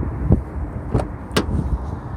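The driver's door of a 2017 Lexus GS 350 F Sport being opened: a few sharp clicks from the handle and latch, the sharpest about a second and a half in, over a low rumble.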